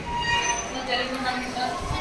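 Indistinct chatter of children's voices, with low rumbling handling noise near the end as the phone recording is moved.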